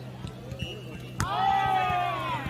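A jokgu ball is struck once with a sharp smack about a second in, followed at once by a player's long, loud shout. A steady low hum runs underneath.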